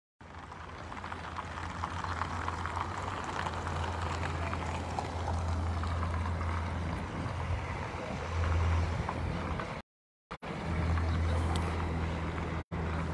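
Outdoor parking-lot ambience: a steady low hum with faint vehicle and traffic noise. The sound cuts out for about half a second near the end.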